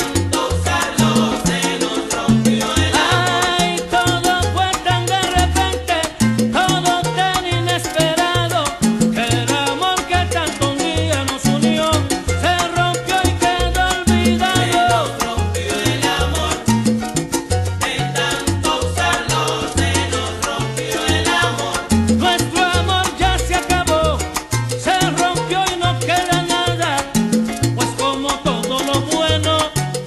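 Salsa music: a salsa band recording playing, with a bass line moving note to note under the melody.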